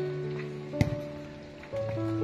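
Background music of slow held notes that change pitch every so often, with a single sharp knock a little under a second in.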